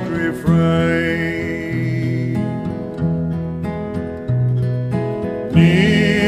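Acoustic folk band music: an instrumental break with guitar over slow, held chords, with singing coming back in near the end.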